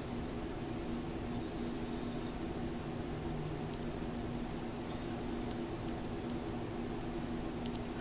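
Steady background hiss with a faint low hum and no distinct events: room tone.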